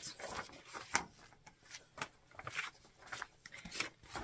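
Sheets of printed paper rustling in the hands as a quilt pattern is shuffled and held up, with a few sharp crinkles.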